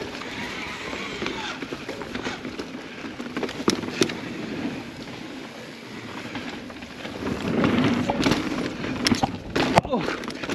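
Mountain bike riding down a rough rock-and-root trail, heard from a camera on the rider: a steady rush of tyre and wind noise with scattered knocks and rattles from the bike over rocks. It gets louder in the last few seconds, with sharp knocks near the end as the bike comes off a jump.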